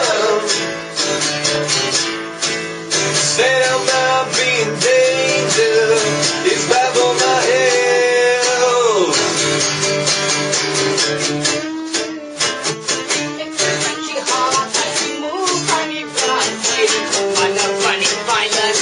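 Acoustic guitar strummed fast and steadily in an instrumental passage of a live rock song.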